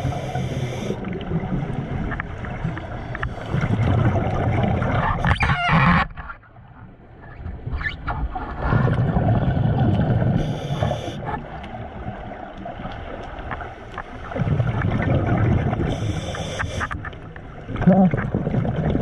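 Scuba diver breathing through a regulator underwater: three long surges of bubbling rumble a few seconds apart, with brief hisses and quieter gaps between them.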